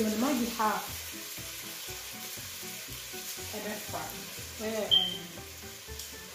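Food frying in butter in a steel pot on the hob: a steady sizzle, with a voice breaking in briefly at the start and again about two-thirds of the way through.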